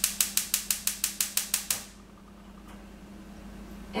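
Gas stove burner's spark igniter clicking rapidly and evenly, about seven clicks a second. The clicking stops just under two seconds in as the burner lights, leaving a faint steady hum.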